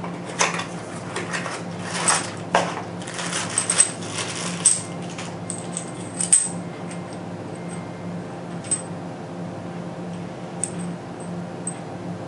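Hands unboxing a small cardboard box and handling a plastic flashlight remote pressure-switch cord: rustling with light clicks and taps, busiest in the first six seconds, then a few isolated small clicks. A steady low hum runs underneath.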